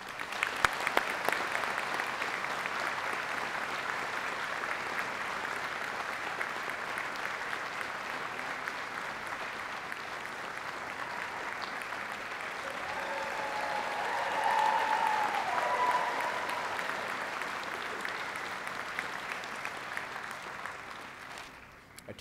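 Theatre audience applauding, starting suddenly and continuing steadily, with a few voices cheering over it about two-thirds through as the applause swells, then fading away near the end.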